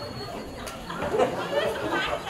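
Speech: voices talking at a moderate level, with no other distinct sound.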